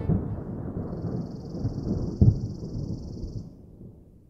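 A low, thunder-like rumble that fades away over the few seconds, with one heavy thud a little after two seconds in and a faint high hiss across the middle.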